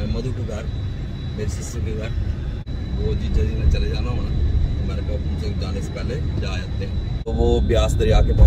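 Steady low rumble of a car's engine and road noise heard inside the moving car's cabin, with faint talk over it and a man's voice near the end. The sound drops out briefly twice, about two and a half seconds in and again about seven seconds in.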